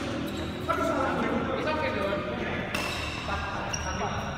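Badminton rally sounds: sharp hits of racket on shuttlecock and shoes squeaking on the court floor, with voices in the background.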